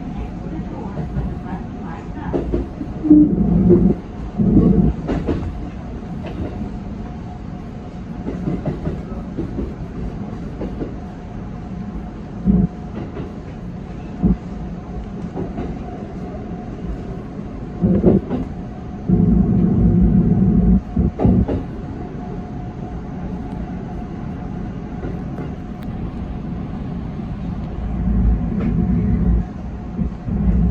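JR 313 series electric train running, heard from the driver's cab: a steady rolling rumble with a faint steady whine. Louder spells of wheel rumble and knocking come about three seconds in, again past the middle, and near the end as it runs over points and into the station.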